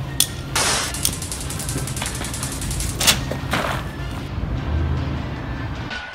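Sharp gunshot-like bangs over background music. There is one bang just after the start, then a burst and a rapid run of shots for about two seconds, and another loud crack about three seconds in.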